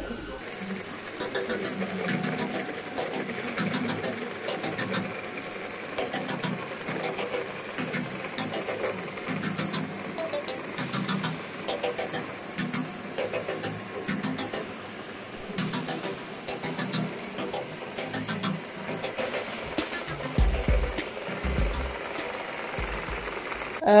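Roborock S5 Max robot vacuum-mop running on a cleaning pass, a steady motor whir with a faint high whine, over tile and rug.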